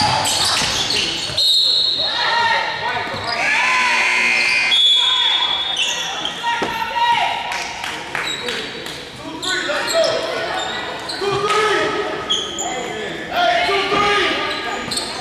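Indoor basketball game on a hardwood court: the ball bouncing, sneakers squeaking on the floor, and players and spectators shouting, all echoing in the gym.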